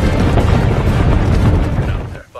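Loud film soundtrack: orchestral score over the low rumble of a charging herd of direhorses galloping through the jungle, dropping away abruptly at the end.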